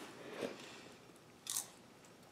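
Two faint crunches, one about half a second in and a sharper one about a second and a half in.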